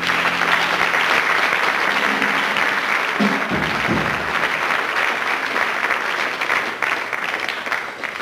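A small audience applauding steadily as the last chord of the jazz piece dies away.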